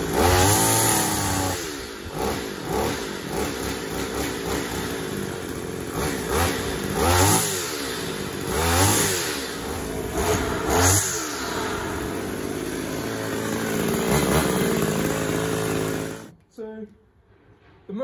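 Petrol strimmer's small two-stroke engine running and revved in several sharp blips, then cut off about 16 seconds in. It runs fine after being put back together.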